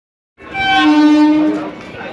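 Suburban electric local train's horn sounding one steady blast, starting about half a second in and held for about a second before fading. Platform crowd noise continues underneath.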